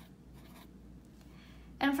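Felt-tip pen writing on lined notebook paper: a faint scratching as two zeros are written. A woman's voice starts near the end.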